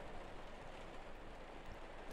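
Faint, steady background hiss with no distinct sounds: room tone.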